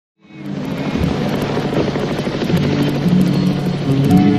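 Helicopter rotor noise fading in, joined by music whose sustained low notes enter about two and a half seconds in.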